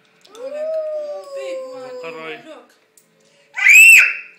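A toddler's voice: one long held 'aah' that rises and then slowly sinks in pitch, then near the end a short, very loud, high-pitched squeal.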